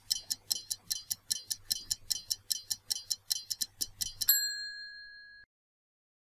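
Quiz-timer stopwatch ticking sound effect: rapid, even ticks that stop about four seconds in with a loud bell ding, the time-up signal, which rings on for about a second.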